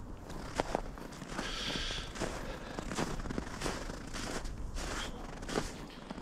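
Footsteps in snow at a steady walking pace, a short step sound roughly every half second to second.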